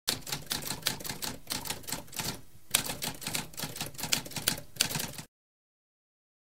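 Typewriter sound effect: rapid keystrokes clacking in a quick run, with a brief pause about halfway through, stopping abruptly about a second before the end.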